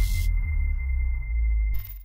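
Electronic logo-sting sound effect: a deep, sustained bass boom with a single thin, steady high tone ringing over it, cutting off just before the end.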